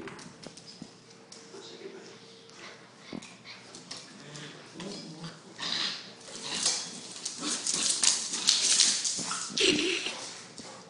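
A puppy and a larger dog play-fighting on a tile floor: scuffling and clicking of paws and claws on the tiles, mixed with small dog vocal noises. The scuffle gets louder and busier after about six seconds, and a short pitched yelp comes near the end.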